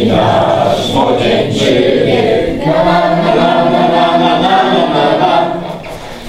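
A roomful of people singing a song together, with a short break between phrases near the end.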